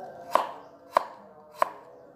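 Kitchen knife chopping peeled turmeric root on a wooden cutting board: three sharp chops about two-thirds of a second apart.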